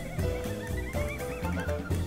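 Jazz combo recording of bass, piano, drums and percussion, with low walking bass notes and drum strokes under a high, wavering tone that slides up and down above the band.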